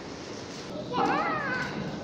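A child's short high-pitched call about a second in, rising and then falling in pitch, over a steady hubbub of children.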